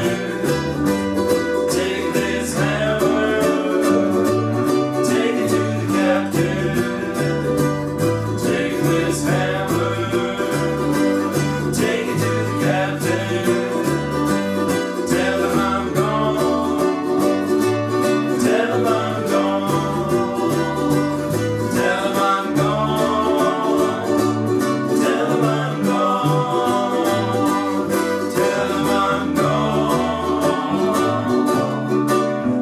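A small ukulele band playing: several ukuleles strumming and picking over a plucked U-Bass line, with men's voices singing in stretches.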